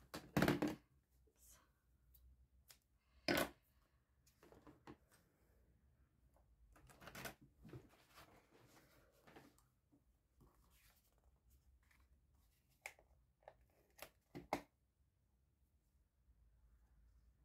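Crafting handling noises as card stock, ribbon and small tools are moved and set down on a work mat. There are a few sharp knocks and taps, the loudest about half a second in and again at about three and a half seconds, with paper rustling in between and a cluster of taps near the end.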